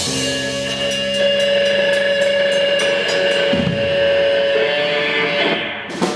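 Live indie rock band holding a final chord: a cymbal crash at the start, then electric guitar and bass ringing out on sustained notes. The chord thins slowly and is cut off just before the end.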